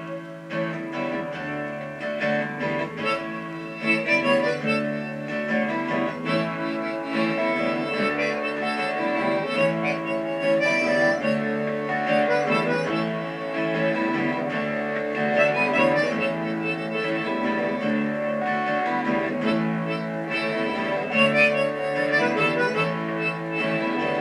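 Instrumental song intro: acoustic guitar strumming in the key of A, with harmonica playing the melody over it.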